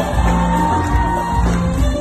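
Live Turkish pop music from a band on stage, played loud through a concert hall's PA, with a beat pulsing in the bass and a long held high note that ends just before the close. The crowd shouts and whoops over it.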